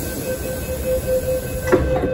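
MTR M-train door-closing warning beeping rapidly at one steady pitch, then the sliding passenger doors shutting with a knock about three-quarters of the way through.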